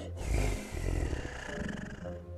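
Velociraptor screech sound effect: a long hissing cry that falls slowly in pitch over about a second and a half, over a low rumble.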